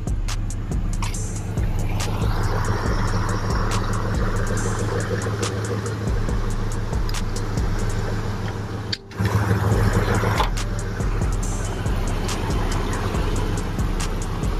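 Pickup truck engine idling steadily, just brought to life with a jump starter after about two months of not starting. Background music with a steady beat plays over it, and the sound breaks off briefly about nine seconds in.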